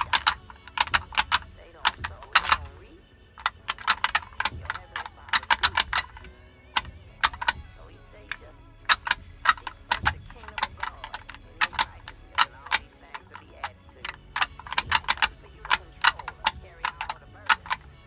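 Rapid, irregular clusters of sharp clicks and taps, fairly loud, with short pauses between the clusters.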